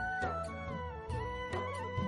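Instrumental background music: a gliding melody line over a steady percussion beat and bass, in a folk or film-music style.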